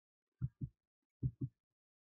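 Two pairs of soft, low thuds, each pair a quick double knock, the pairs about three quarters of a second apart.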